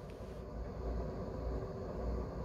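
A low, steady background rumble with faint room noise, no distinct clicks or strokes.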